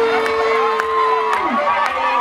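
A dancing crowd cheering over dance music with a steady low beat, about two beats a second. A long, high held cry carries over the noise and drops away near the end.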